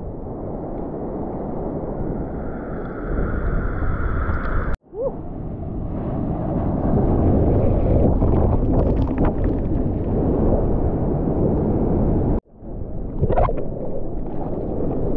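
Sea water rushing and splashing right against the camera as a bodyboard moves through breaking surf. The sound cuts out abruptly twice, about five seconds in and near the end, and picks straight back up each time.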